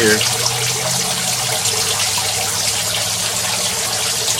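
Thin streams of water draining from an IBC tote aquaponic grow bed and splashing into the fish tank below, a steady trickling.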